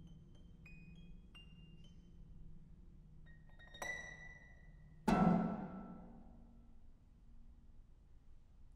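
Solo concert pedal harp: a few soft, high plucked notes, then a bright ringing note about four seconds in. About five seconds in comes a loud, low plucked note that rings on and fades away.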